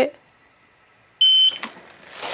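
A small heat sealer for plastic bags gives one short, high-pitched electronic beep about a second in, after a moment of near silence. Faint crinkling of the plastic bag follows.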